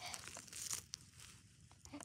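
Faint crunching and crinkling of snow as plastic animal figurines are shifted by hand, with one brief sharper crackle under a second in.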